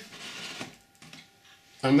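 Faint rustling and scraping of hands working thin rods through the foam tail of an R/C glider, fading to near silence after about half a second.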